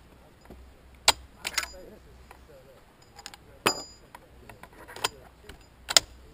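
A handful of sharp metallic clinks scattered over a few seconds, some with a brief ring, the loudest about a second in: .50-calibre brass cartridges being handled on a wooden shooting bench.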